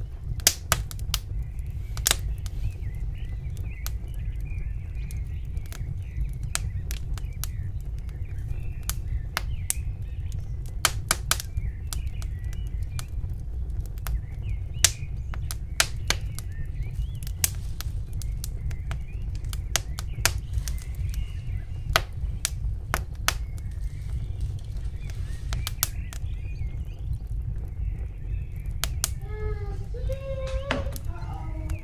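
Irregular sharp clicks and crackles over a steady low rumble, from gloved hands handling and pressing raw chicken pieces into breadcrumbs on a plate.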